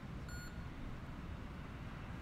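Steady low rumble of background noise, with one brief high-pitched beep about a third of a second in.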